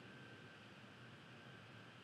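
Near silence: faint room tone with a low hiss and a thin, steady high tone.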